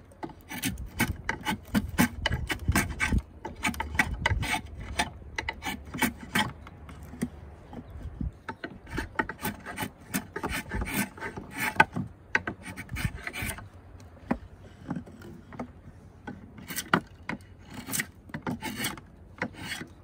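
Steel draw knife shaving a square black locust peg blank: a quick run of short scraping strokes as shavings peel off the hard wood. The high bellies in the middle of the blank are being taken down to bring it to a consistent square.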